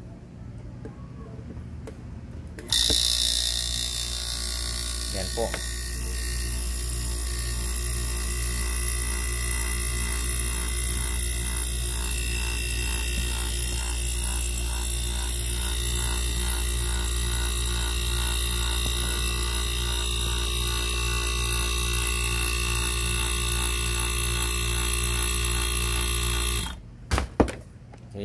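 Small electric air compressor switching on about three seconds in, running steadily for about 24 seconds and then stopping, followed by a couple of sharp clicks. It is pumping air into an air-conditioner evaporator through manifold gauges, toward 150 to 250 psi, to pressure-test it for leaks.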